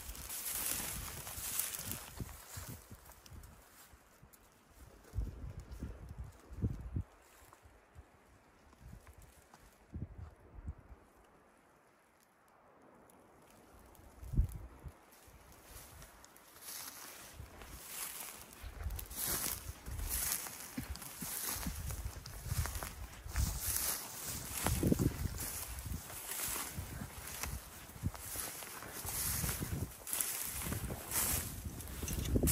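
Footsteps and rustling as someone walks through dense shrubs and spruce undergrowth, twigs and branches brushing and crackling, with low bumps on the microphone. It goes almost quiet for a few seconds near the middle, then the steps come at a steady walking pace through the second half.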